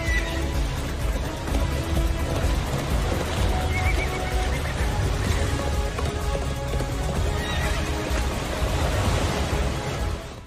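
Orchestral film score with a horse whinnying over it, from an animated film's soundtrack.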